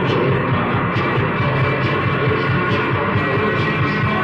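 Live post-punk rock band playing mid-song: a steady, even drum beat under sustained guitar and bass.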